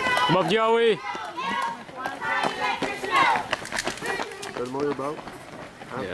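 Roadside spectators' voices calling out, with one long drawn-out shout about half a second in, over the footfalls of runners passing close by.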